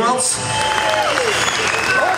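Audience applauding as a song ends, with voices and shouts heard over the clapping.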